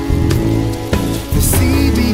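Recorded band music in an instrumental stretch: regular drum hits over steady bass, with a brief bright swell of hiss about one and a half seconds in.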